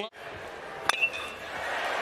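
A metal baseball bat strikes a pitched ball with a single sharp ping about a second in, ringing briefly. Crowd noise runs under it and swells after the hit.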